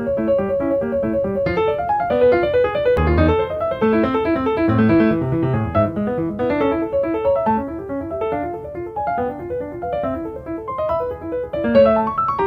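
Background piano music: a lively stream of quick notes in a steady rhythm.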